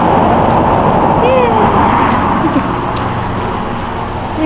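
Road traffic on a main road, a steady rushing noise that slowly fades, echoing in a concrete underpass; a brief voice sound about a second in.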